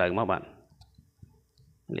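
A voice speaking, breaking off about half a second in for a quiet pause with a few faint clicks, then speaking again near the end.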